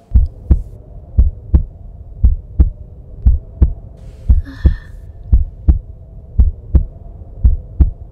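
Heartbeat sound effect: slow, steady double thumps (lub-dub), about one beat a second, eight beats, over a faint steady drone, with a short breath near the middle.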